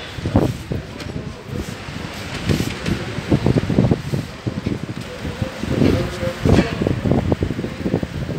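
Indistinct talking of people close to the microphone, coming and going in short stretches over a steady outdoor background.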